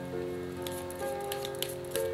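Soft background music with sustained chords that change every half second or so. Over it, the light, quick clicking and flicking of a deck of cards being shuffled by hand.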